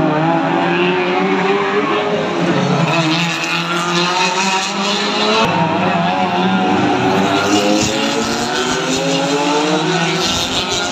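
Historic Ford Escort race cars coming through a corner one after another, their engines revving hard. The pitch rises and falls as they brake, shift gear and accelerate away.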